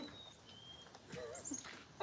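A small dog whining faintly, with a short wavering whine a little past the middle, wanting to be let inside.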